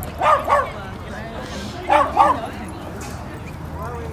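A small dog barking: two pairs of quick, high yips, the second pair about a second and a half after the first.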